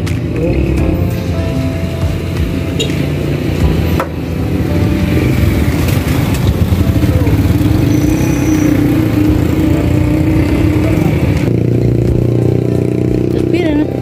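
Music with a singing voice, mixed with the steady running of a motor engine; the sound changes abruptly about three-quarters of the way through.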